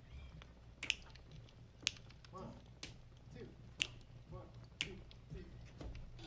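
A band's tempo count-off: five sharp clicks or snaps, evenly spaced about a second apart, with a faint voice quietly counting between them.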